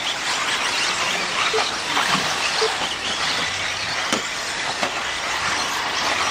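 Several 4WD radio-controlled off-road buggies racing on a dirt track: a steady wash of motor and tyre noise with a few short chirps.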